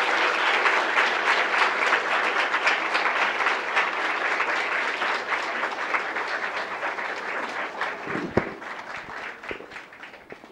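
An audience clapping, starting as the music ends and slowly dying away over the following seconds, with a brief low thud about eight seconds in.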